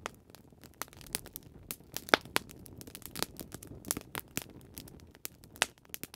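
Wood fire crackling: irregular sharp pops and snaps, the loudest about two seconds in, over a low steady noise.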